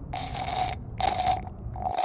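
Three noisy sips of hot tea from a mug, each about half a second long, with short pauses between them.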